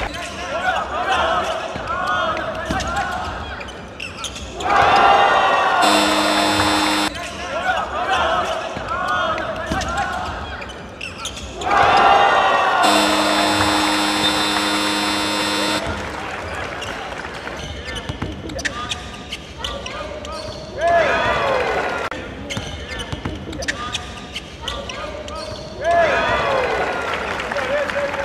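Basketball game in a gym: sneakers squeak on the hardwood, the ball bounces and voices shout. A scoreboard buzzer sounds for about a second, about six seconds in, and again for about three seconds, about thirteen seconds in.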